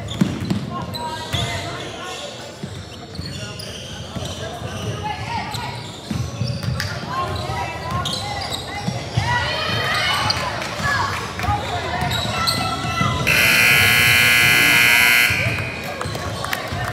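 Basketballs bouncing on a hardwood gym floor amid players' shouts in a large echoing hall. Near the end a loud, steady scoreboard horn sounds for about two seconds as the game clock reaches zero.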